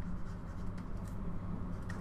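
Faint scratching of a stylus on a pen tablet in short writing strokes, over a steady low electrical hum.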